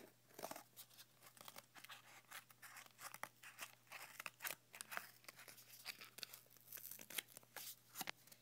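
Scissors cutting through cardboard: a run of faint, irregular snips and crunches as the blades bite through the card.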